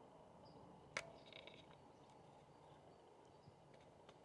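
Near silence: faint outdoor hiss with a few faint, high bird chirps, and one sharp click about a second in.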